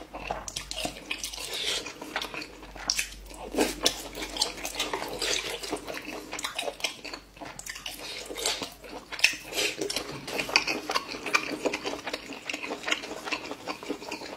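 Close-miked wet eating sounds of noodles in soup: chewing and slurping, with many irregular small smacks and clicks.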